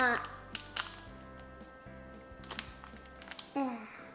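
A few light, sharp clicks and taps from a small plastic craft packet being handled on a table, over steady background music.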